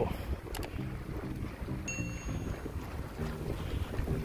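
Wind buffeting the microphone as the camera moves along on a bicycle, a steady low rumble, with faint background music.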